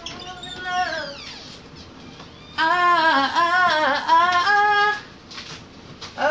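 A woman singing a wordless, wavering phrase, loud, for about two and a half seconds in the middle, after a softer falling vocal glide at the start.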